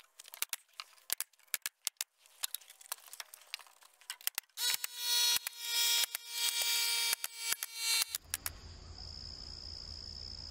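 Irregular small clicks and rattles, then a power tool's motor whine in several short rising surges for about three and a half seconds while battens are fastened to board siding. After that, a steady high insect trill with a low hum.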